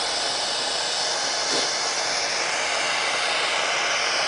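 Handheld propane torch burning with a steady hiss of gas and flame, its flame played on a lump of snow.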